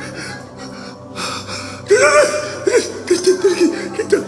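A man on the floor gasps into a close-held microphone about a second in. Near the middle he lets out a loud cry, then a quick run of short, breathy vocal catches, about four a second, like panting sobs or laughs.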